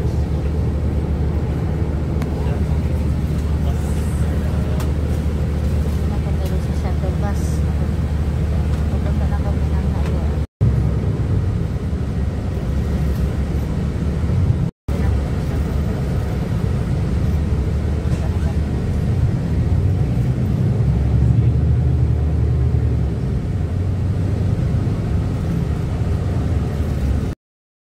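Shuttle bus engine and road rumble heard from inside the cabin, a steady low drone that cuts out abruptly twice for an instant.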